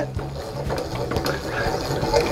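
Caravan roof TV aerial being wound up by its ceiling-mounted hand winder, the gear mechanism turning with a steady mechanical winding sound as the aerial rises.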